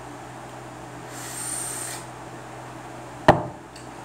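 A drag on a vape: a soft hiss with a faint high whistle for about a second as air is drawn through the atomizer. A single sharp knock near the end is the loudest sound.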